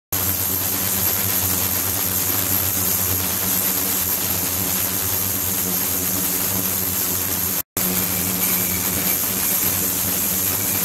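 Ultrasonic cleaning tank running with the water cavitating: a steady hiss over a low hum that starts abruptly, with a brief break about three-quarters of the way through.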